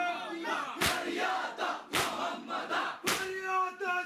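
A crowd of men doing matam, striking their chests together in a steady beat: three loud slaps a little over a second apart. Men's voices chant a mourning noha between the strikes.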